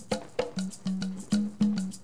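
Bomba dance music, led by percussion: a steady rhythm of sharp wooden clicks, about four a second, over short repeated drum notes.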